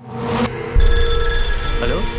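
Trailer sound design: a swell rising out of silence, then a deep boom about three-quarters of a second in, with steady high ringing tones held over it.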